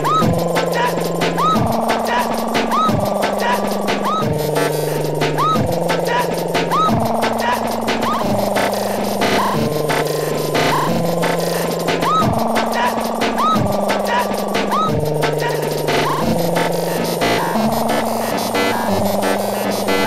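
Breakcore: fast, dense chopped drum breaks over a stepping bass line, with a short rising synth glide repeating about every second and a half.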